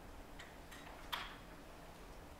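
Quiet room tone with a few faint, short clicks close to the microphone, the clearest about a second in.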